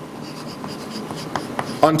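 Chalk writing on a chalkboard: soft scratching with several light taps as words are chalked up.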